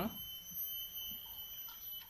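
Quiet background with a faint, steady high-pitched whine; the last of a spoken word trails off at the very start.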